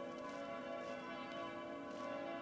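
Quiet background music: a sustained, bell-like chord held steady, with a few faint chime strikes.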